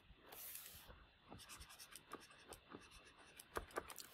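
Faint, irregular taps and scratches of a stylus writing on a tablet or pen-display surface.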